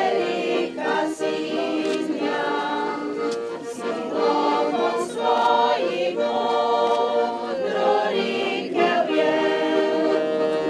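A choir singing, several voices holding notes in harmony.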